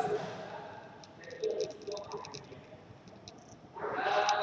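Low background with a faint, muffled voice about one and a half to two and a half seconds in, and a few light clicks.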